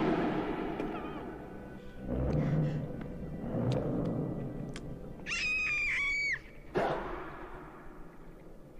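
Animated-film soundtrack of score and sound effects: a sudden loud hit at the start and another loud swell about two seconds in. About five seconds in comes a high-pitched squealing cry lasting about a second, as the small dinosaur strains against a heavy rock, then another sudden hit.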